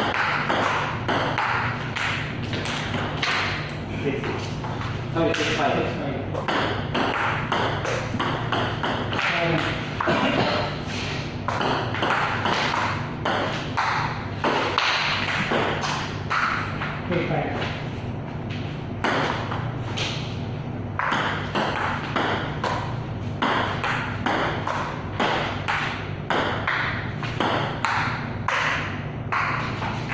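Table tennis ball being hit back and forth, striking paddles and table in a long run of sharp, quick clicks, with voices in the background.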